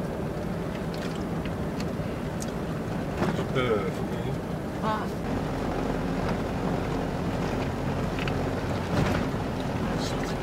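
Running engine and road rumble of a vehicle driving over a dirt track, heard from inside the vehicle. The drone is steady, and the engine note changes about five seconds in.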